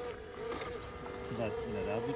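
Electric motor and gearbox of an FMS FJ Cruiser mini RC crawler whining steadily at one pitch as it crawls over tree roots.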